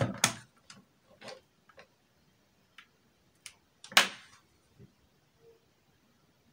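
Scattered small clicks and taps of a USB charging cable being plugged into a smartphone and the phone being handled, with one sharper knock about four seconds in.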